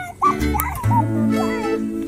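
Background music of steady held notes over a changing bass line, with short high sliding squeal-like sounds over it during the first second and a half.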